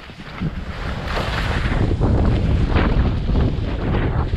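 Wind buffeting the microphone of a skier's camera, growing louder about a second in as speed builds, with skis scraping and chattering over tracked, uneven spring snow.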